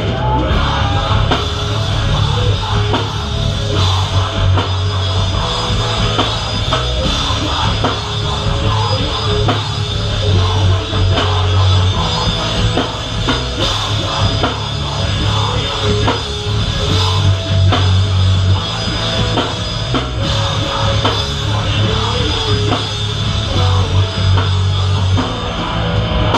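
Live hardcore band playing loud: distorted electric guitars, bass and a drum kit, with heavy bass swelling in and out.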